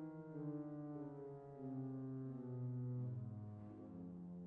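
Pipe organ playing slow sustained chords, the bass line stepping down note by note.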